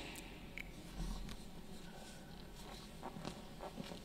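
Faint room tone of a large church interior with scattered small clicks and rustles, and a soft low thud about a second in.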